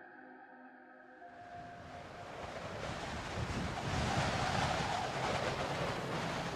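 A faint, steady music drone, then a rushing wind noise that swells up over about three seconds and holds.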